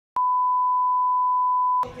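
An electronic beep: one steady pure tone at a single pitch, starting abruptly with a click and held for about a second and a half before cutting off.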